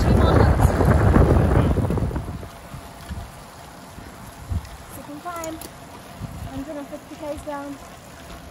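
Wind rushing over the microphone of a camera on a moving road bike, loud for about two seconds, then dropping to a quieter rush with faint voices of riders.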